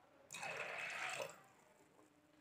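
Water poured into a metal pot of soaking black chickpeas, a soft splashing pour that lasts about a second and stops.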